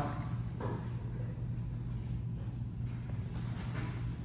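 Soft rustling of jiu-jitsu gis and bodies shifting on a mat as one grappler rolls backwards to turn his partner over, over a steady low hum.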